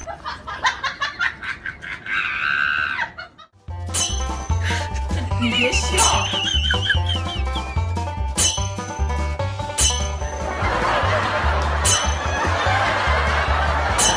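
Background music with a steady bass beat and regular drum hits, after a brief break about three and a half seconds in.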